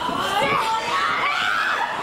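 High-pitched women's voices shouting and yelling in drawn-out, bending cries, with other voices beneath.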